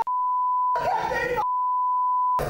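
A broadcast censor bleep, a steady tone at about 1 kHz, masking a woman's angry shouting in a courtroom outburst. The bleep sounds for most of the first second, breaks for a short burst of her shouted words, then comes back.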